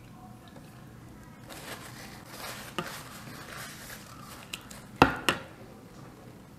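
Wet, squishy sounds of fried chicken being dipped in a glass bowl of sauce and basted with a metal spoon, with a few sharp clicks, the loudest about five seconds in.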